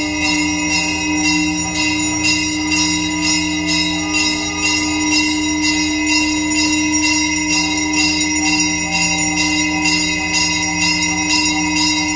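Temple bells rung rapidly and steadily, about three strokes a second, over a continuous low droning tone, the bell-ringing that accompanies a lamp offering (aarti) to the deity.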